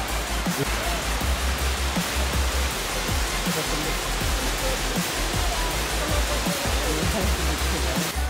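Waterfall rushing steadily, heard under background music with a pulsing bass beat.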